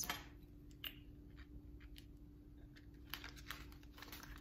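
Faint, scattered light taps and paper rustles from handling a booklet of sticker sheets and metal tweezers on a desk, about half a dozen small clicks in all, over a steady low hum.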